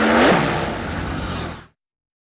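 Whoosh sound effect for an animated logo: a rising rush of noise with a tone that drops sharply in pitch at its peak, like a vehicle passing by, then cuts off suddenly near the end.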